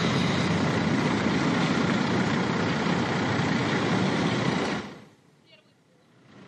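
Street traffic noise led by a city bus's engine running close by: a steady, loud rumble and hiss that cuts off about five seconds in.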